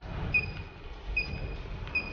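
Handheld UHF RFID reader beeping: three short high beeps about 0.8 s apart, each marking a read of the bottle's RFID label, over steady background noise and handling rumble.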